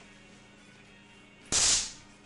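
A Stun Master 775,000-volt handheld stun gun is triggered once about one and a half seconds in, giving a sudden, loud burst of electric arcing across its prongs that lasts about a third of a second.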